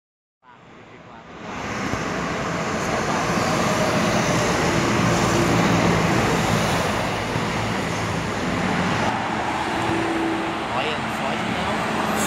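City street traffic: cars and city buses passing, with a steady diesel engine hum, fading in over the first two seconds.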